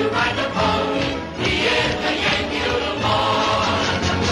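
Orchestra playing a lively show tune, with a chorus of voices.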